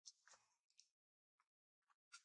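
Near silence, broken by a few faint, brief noises, the strongest right at the start.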